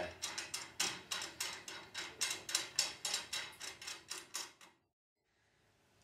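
Rapid, irregular metallic clicking, several clicks a second, as a nut is worked down onto a bolt on the aluminium mill frame. It cuts off suddenly near the end.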